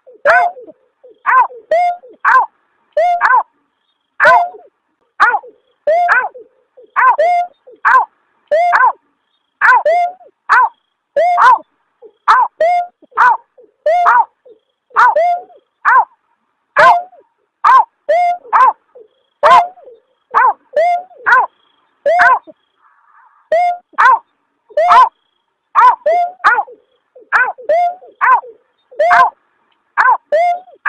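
Recorded bird call of the berkik (snipe), as used to lure the bird: short, falling 'aw' notes repeated over and over, often in twos and threes at about one and a half per second, with one brief pause a little after the middle.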